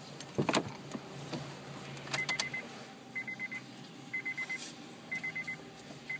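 A car door latch clicks open, then the car's door-open warning chime sounds: a quick run of high beeps once a second, four times.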